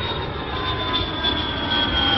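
Jet airliner engine sound effect: a steady rush with a high whine that slowly drops in pitch.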